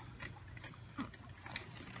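A sleeping newborn's faint short grunt about a second in, among a few light clicks.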